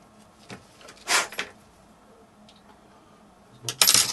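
A tool scraping into packed Delft clay casting sand to cut air holes in a ring mould. There are a few short scratchy strokes, the loudest just before the end.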